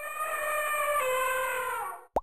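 A logo sting: one long pitched, horn-like tone rich in overtones, holding steady and sagging slightly in pitch before it stops near the end.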